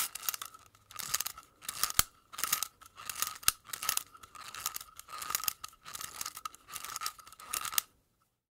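A run of dry crunching, scraping strokes about every half second, with a couple of sharp clicks among them: a crunch sound effect that may be digging in gravelly earth.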